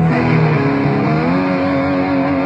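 Rock band playing live on amplified electric guitars, loud, with sustained guitar notes; a note bends upward a little past halfway through.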